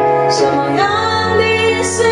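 A woman singing a Mandarin ballad live into a microphone, holding long notes, over sustained electronic keyboard chords.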